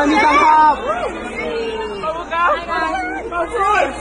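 A young woman's voice calling out in a gliding, sing-song way, one note held and drawn out, with other people chattering around.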